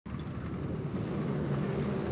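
A full field of turbocharged side-by-side racing UTVs revving together as the pack launches from the start line, the sound growing slightly louder.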